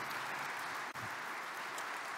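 Audience applauding, a steady even clapping with one very brief dropout about halfway through.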